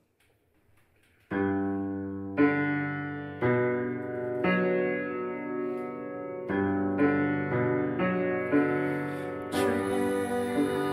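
Upright piano playing slow sustained chords, each struck and left to ring, changing about once a second. It comes in suddenly after about a second of near silence.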